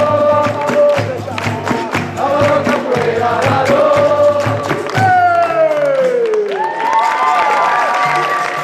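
Capoeira music: a group of voices singing over a steady drum beat. About five seconds in, a voice slides down in pitch and the drum briefly drops out, then the singers hold long notes as the drum comes back.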